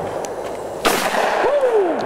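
A single shotgun shot from a break-action shotgun, fired at a clay target about a second after the call for the bird.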